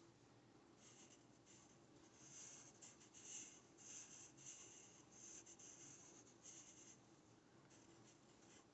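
Black marker scratching faintly on paper in a series of short strokes as a drawn stripe is filled in with ink.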